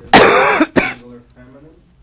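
A person coughing loudly: one harsh cough of about half a second, then a short second cough right after.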